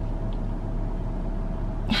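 Steady low hum inside a stationary car's cabin, with a faint steady tone above it.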